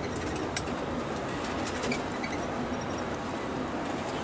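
Steady road and engine noise heard inside a moving vehicle, with scattered sharp clicks and a few short high squeaks.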